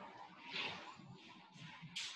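Faint breathing: a few soft, airy breaths about half a second to a second apart, with a sharper one near the end.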